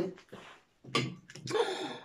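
A woman's voice in a few short, quiet murmured sounds separated by brief pauses.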